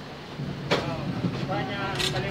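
A single sharp knock about two-thirds of a second in, as the metal top box base plate is pressed and shifted on the scooter's rear bracket, with voices talking in the second half.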